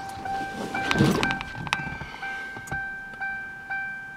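The Ford Crown Victoria's interior warning chime dinging steadily, about three chimes a second, as it does with the driver's door open. A louder knock sounds about a second in.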